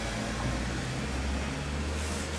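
A low, steady machine hum.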